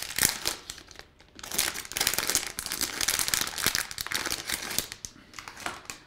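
Plastic packaging bag crinkling as it is handled, in irregular bouts with a short lull about a second in and another near the end.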